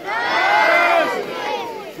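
A large group of children and adults shouting a greeting back in unison: one drawn-out chorus of many voices that starts sharply and fades out over about a second and a half.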